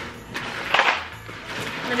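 Wooden spoon stirring a sticky marshmallow-and-cornflake mixture in a plastic bowl, with a few light clicks and one louder scraping knock a little under a second in.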